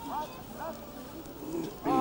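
Children's voices calling out short rising-and-falling shouts about twice a second, in a marching cadence. A louder, held call starts near the end.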